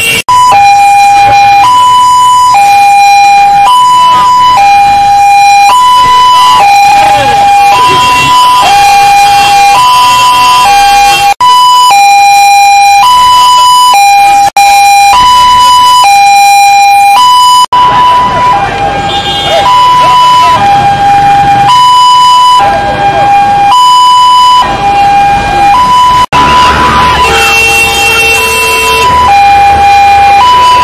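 Two-tone hi-lo siren, loud and steady, switching between a higher and a lower note about once a second.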